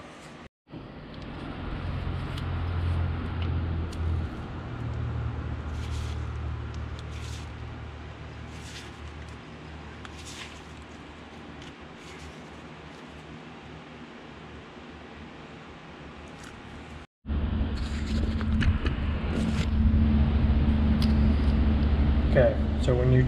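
A steady low hum of workshop background noise with a few faint clicks and taps of metal, as channel-lock pliers snug a threaded piece into a power steering control valve sleeve. The sound drops out for an instant twice, and the hum is louder after the second break.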